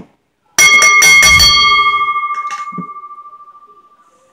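Wrestling ring bell rung in a rapid flurry of strikes starting about half a second in, then left ringing and slowly fading over the next three seconds, the bell that signals the end of the match after the three-count.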